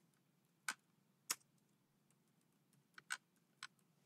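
A few faint, scattered clicks of computer keyboard keys being typed, with near silence between them.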